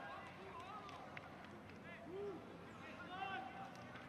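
Faint field-microphone ambience from a football stadium with nearly empty stands: distant voices calling out on the pitch over a low background hiss, with no crowd noise.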